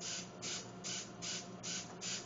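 Small hobby RC servos whirring in short bursts, about two and a half a second, as they sweep back and forth one after another in a programmed sequence.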